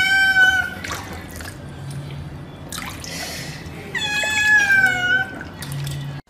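A cat meowing twice: a short high meow at the start and a longer meow about four seconds in that falls slightly in pitch.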